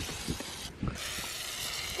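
Aerosol chain lubricant hissing from a spray can onto a bicycle chain, in two sprays with a short break about two-thirds of a second in.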